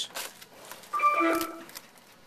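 Brief crinkling of a foil trading-card pack wrapper being handled, then about a second in a short tune of a few steady notes, like an electronic chime, with a soft thud among them.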